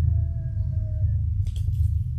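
A steady low hum, with a faint held tone that fades out after about a second and a few soft clicks near the end.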